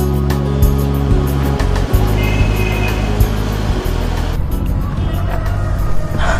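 Background film music with sustained low chords over a car's engine running.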